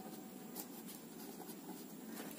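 Pen writing on ruled notebook paper: a series of faint, short scratches as the strokes of the letters are drawn.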